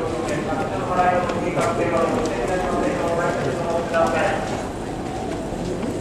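Horses' hooves clip-clopping at a walk on the paddock surface, under people talking.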